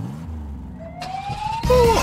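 Cartoon car engine sound effect: a low engine rumble starts suddenly, then revs up with a rising whine from just under a second in. Near the end a louder sound comes in as a voice starts to laugh.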